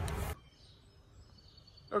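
Outdoor noise with a low rumble that cuts off abruptly about a third of a second in, leaving quiet outdoor ambience with faint distant bird chirps.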